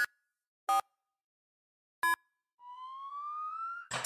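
Cartoon game sound effects: three short electronic beeps with gaps between them, then a rising slide tone lasting just over a second as the yellow car moves into its silhouette slot on the car carrier.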